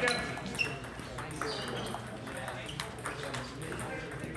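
Table-tennis ball clicking off the paddles and pinging on the table in a rally, the loudest hits in the first second, with more balls from other tables and voices behind.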